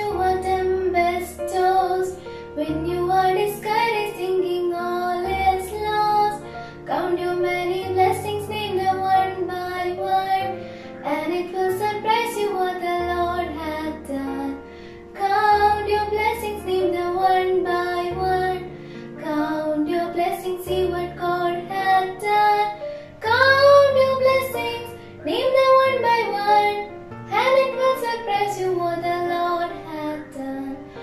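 Two schoolgirls singing a Christian prayer song together over an instrumental backing with sustained bass notes.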